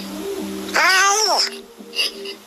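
A single meow-like call, about three-quarters of a second long, that rises and then falls in pitch, over background music with held notes.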